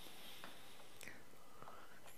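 A quiet pause in a man's speech, picked up on a headset microphone. There is faint breath hiss and two soft mouth clicks, about half a second and about one second in.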